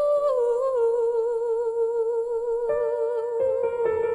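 A woman's voice holding one long sung note with a wavering vibrato, dipping slightly in pitch about half a second in, then moving to other notes near the end.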